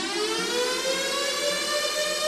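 Siren-like wail in a eurodance track, a rising tone full of overtones that climbs for over a second and then holds steady.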